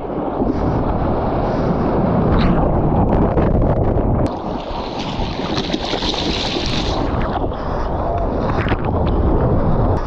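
Seawater sloshing and splashing against a GoPro held at the surface on a bodyboard, with wind buffeting the microphone. Between about four and seven seconds in, a hissing rush as water washes over the camera.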